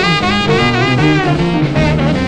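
Early rhythm-and-blues record: a honking tenor saxophone solo with bending, gliding notes over a rolling boogie-woogie piano and bass figure and a swing beat.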